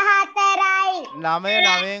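Children's voices reciting in a drawn-out, sing-song chorus, with a man's lower, long-held voice joining a little over a second in.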